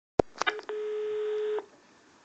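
A sharp click, a couple of small clicks, then a steady electronic telephone beep lasting about a second that cuts off abruptly.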